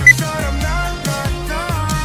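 A workout interval timer gives one short, high, loud beep just after the start, marking the end of the exercise interval. Behind it runs pop music with a steady bass beat and a melody.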